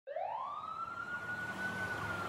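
Emergency vehicle siren winding up: a single wailing tone rises quickly in pitch over the first second, then holds steady, over a faint background hiss.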